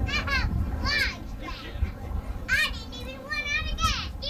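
Children's high-pitched shouts and squeals, several short calls in a row, over a steady low rumble.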